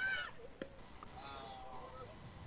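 Faint, distant high-pitched voices calling out in the background of the ballfield broadcast, with a single sharp click about half a second in.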